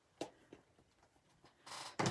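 Faint handling of craft supplies on a desk: a sharp click about a quarter second in, a few light ticks, then a short rustle near the end as a hand reaches for the ink pad.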